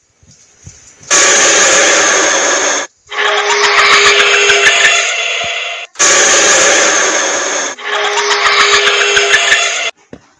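Loud, harsh jump-scare screech sound effect, starting about a second in. It breaks off briefly about three seconds in and again about six seconds in, and the same two-part sound plays a second time.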